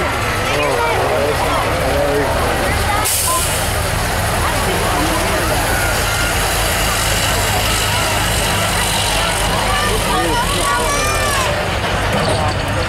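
Diesel engine of a semi-tractor pulling a weighted sled under heavy load, a steady deep drone, with a hiss joining in about three seconds in. Crowd chatter runs over it.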